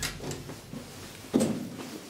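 Elevator door hardware being handled: a click, small knocks, then one loud clunk about a second and a half in.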